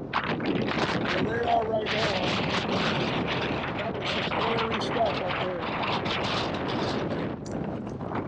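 Strong, gusty wind blowing over the microphone, a dense rushing noise that flickers with the gusts and never lets up.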